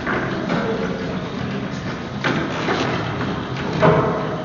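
Footsteps and chairs knocking on a wooden stage floor as performers walk on and sit down, a few sharp thuds over a low background hubbub.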